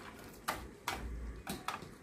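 Kitchen scissors cutting through a crisp, deep-fried battered paan (betel) leaf: four sharp crunching snips, the brittle fried batter cracking under the blades.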